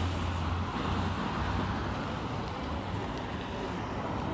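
Steady road traffic noise with a low engine hum.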